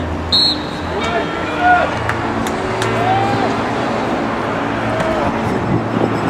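Voices calling out in short, rising-and-falling shouts across an outdoor football field, over steady notes of music.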